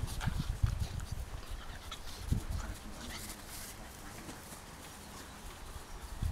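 An Akita puppy and another puppy play-wrestling on grass: scuffling and rustling with faint puppy noises, busier at first and quieter from about halfway.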